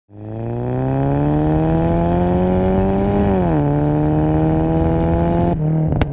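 Car engine accelerating, its pitch climbing steadily, dropping at an upshift about three and a half seconds in, then climbing again before breaking off shortly before the end.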